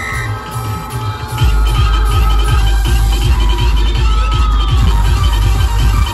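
Loud electronic dance music played through a large outdoor DJ loudspeaker rig. About a second and a half in, a heavy, sustained deep bass comes in under the music.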